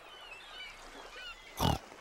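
A single short pig snort from a cartoon pig character about one and a half seconds in. Before it there is a faint background with a few faint, high, gliding chirps.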